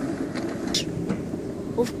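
Summer toboggan sled running steadily in its steel trough as it is towed uphill, with a sharp click about three-quarters of a second in.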